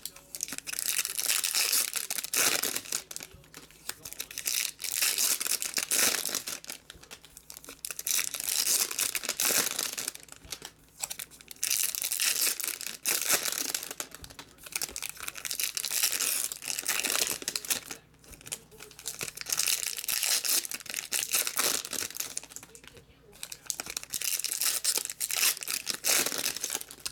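Foil trading-card packs being torn open and their wrappers crinkled, in repeated bursts of crackling with short pauses between packs.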